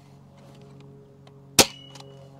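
Adventure Force Nexus Pro spring-powered foam dart blaster firing a single full-length dart: one sharp clack about one and a half seconds in, with a brief metallic ring after it.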